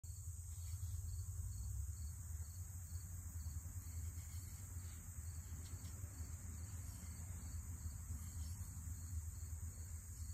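Insects, crickets or similar, trilling steadily in a high, even buzz, with a second, pulsed chirping in the first few seconds, over a steady low rumble.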